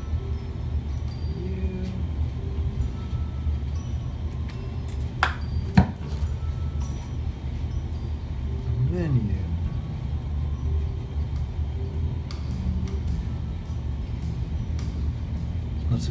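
A steady low hum with faint music notes over it, and two sharp clicks about five and six seconds in, the second the loudest moment.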